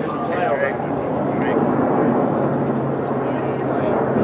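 Spectators' voices chattering in the stands at a ballpark, with a steady low drone growing in underneath from about halfway through.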